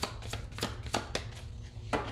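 A deck of tarot cards being shuffled by hand: crisp, uneven slaps and flicks of cards against one another, the loudest near the end, over a steady low hum.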